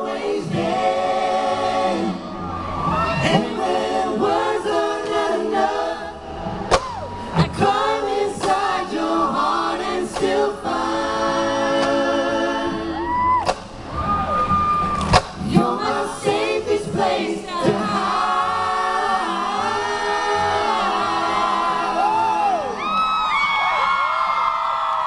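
Male pop vocal group singing a cappella in close multi-part harmony, amplified through a live PA, with audience noise underneath. A few sharp clicks cut through, and near the end high voices slide upward.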